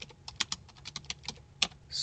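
Typing on a computer keyboard: a quick, uneven run of key clicks, about fifteen strokes in two seconds.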